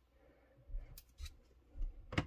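Faint handling sounds of a 3D-printed plastic card holder being turned in the hand and set down on the tabletop: a few scattered light clicks and soft knocks in the second half.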